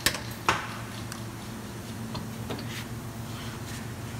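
Wire cutters snipping off the end of a plastic elevator-chain pin: two sharp snaps in the first half second, then a few faint clicks, over a steady low hum.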